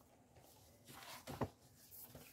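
Faint handling of a softcover colouring book as it is slid and shifted on a cutting mat, with one soft knock about one and a half seconds in.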